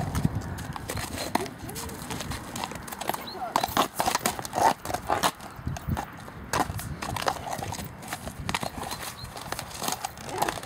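A horse's hooves on a muddy track, stepping irregularly as it jogs and jigs about on the spot, balking at a water-filled ditch.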